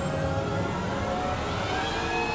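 Sci-fi film sound effect: a steady mechanical drone of several held tones over a low rumble, with a faint high whine slowly rising in pitch.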